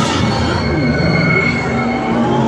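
A high, steady squeal lasting about a second and a half through the middle, over a loud, noisy din.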